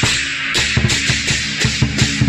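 Chinese lion dance percussion: a big drum struck several times a second under a continuous wash of clashing cymbals.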